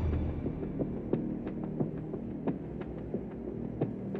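A steady low hum with sharp short clicks scattered through it, a few each second at irregular intervals.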